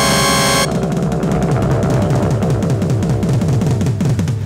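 Stage-music accompaniment: a sustained keyboard chord that cuts off under a second in, followed by a fast drum roll on toms, about five strokes a second, each stroke dropping in pitch.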